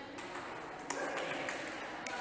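Voices of a group of people, with one sharp clap about a second in.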